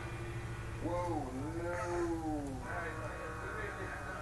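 A woman yawning: one long, voiced yawn about a second in, its pitch dipping and then rising over about two seconds.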